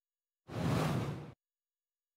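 A whoosh sound effect, a single swish just under a second long starting about half a second in, used as a slide transition as a new example sentence comes on screen.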